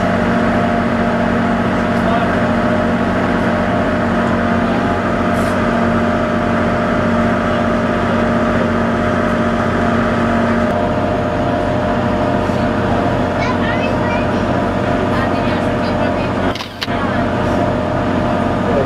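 Boat engine running at a steady drone, heard from on board with water noise. About ten seconds in its note changes and one of its tones drops away. Near the end there is a brief break in the sound.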